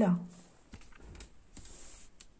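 A few light, scattered taps and clicks of a hand touching and shifting oracle cards on a cloth-covered table.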